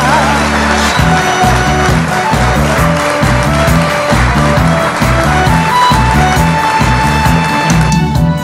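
Instrumental interlude of a Korean popular song: a melody line of held notes over a steady bass and drum beat, with the singer's last held, wavering note fading out in the first moment.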